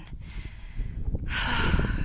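Wind buffeting the microphone with a low rumble, then, a little past halfway, a heavy breathy sigh from the hiker on the steep scree climb.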